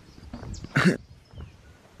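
A dog barks once, a short single bark a little under a second in.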